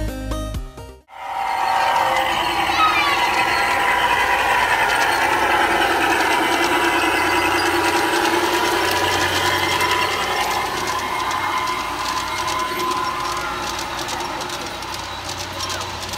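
Background music cuts off about a second in. After that come large garden-scale model trains running on an outdoor layout, with a steady low hum and rolling rumble under the chatter of a crowd of onlookers.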